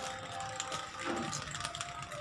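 Homemade guava spinning top turning on its nail tip on a concrete floor, a faint rattling scrape, with faint background music under it.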